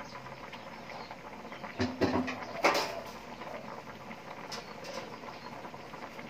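A pot of curry boiling hard on a gas burner, a steady bubbling with a sharp knock about two and a half seconds in.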